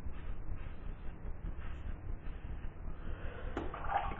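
GEM Junior single-edge razor cutting stubble through shaving lather: a steady crackling scrape as the blade cuts the hair off nicely.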